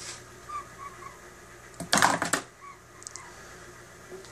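A hard candy cane falls off the end of a motor-driven threaded rod and clatters down a folded white chute into a small tray about two seconds in, a quick run of sharp knocks. Under it a steady low hum from the small AC motor turning the rod, with faint short squeaks now and then.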